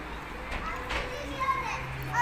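Children playing and calling out, faint and at some distance, with a few brief high voices.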